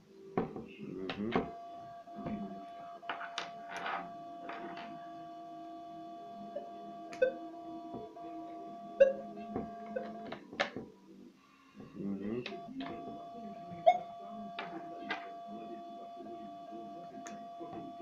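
Metal detector giving a steady held tone, heard with the headphone jack adapters plugged into its headphone socket. A tone passing through like this is the sign that the adapter under test works. The tone breaks off about ten seconds in for a couple of seconds and then resumes, amid sharp clicks and knocks of the metal plugs being handled and pushed into the socket.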